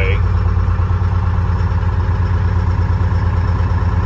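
Detroit Diesel two-stroke diesel engine in a 1976 International Loadstar fire truck idling steadily, left running to build up air pressure for the air brakes.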